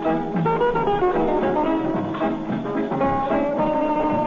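Studio orchestra playing an instrumental number, a busy melody of many changing notes at a steady level.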